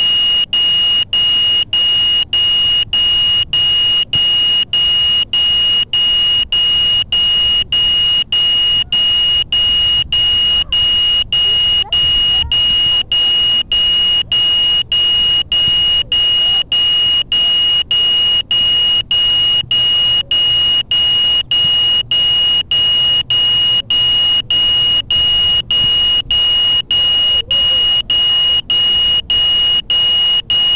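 A quadcopter's onboard alarm buzzer sounding a loud, high-pitched tone, broken by a short gap about every two-thirds of a second. It is signalling the downed quad after its battery was drained.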